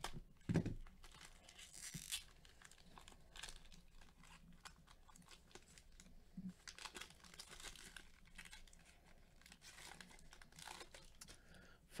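Foil wrapper of a Bowman baseball-card jumbo pack crinkling and tearing as it is opened by hand. It gives faint rustles and crackles throughout, with a few louder rips in the first two seconds.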